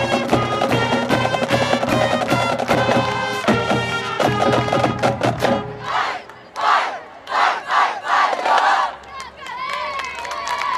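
Marching band of brass and drumline playing the final bars of its field show, cutting off a little over halfway through. Then loud shouts and cheers come in four or five separate bursts, with rising and falling whoops near the end.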